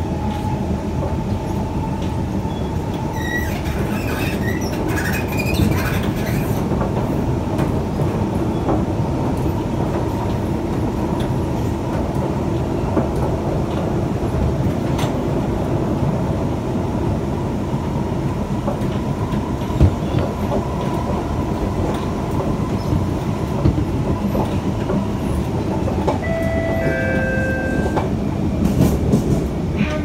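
Singapore MRT C651 train running steadily, heard from inside the carriage: a continuous rumble of wheels on track with a faint steady whine. Brief high squeals come a few seconds in, and a few short steady tones sound near the end.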